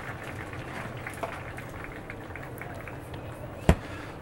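Outdoor golf-course ambience: a low, steady background hum of the gallery and grounds. One sharp click comes about three-quarters of a second before the end.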